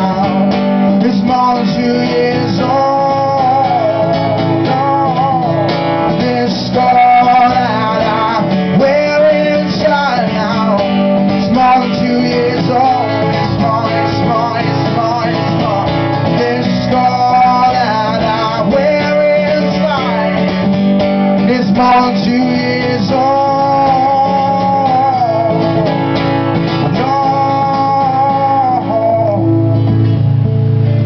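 Live solo acoustic performance: a steel-string acoustic guitar strummed under a man singing a melody of long held notes.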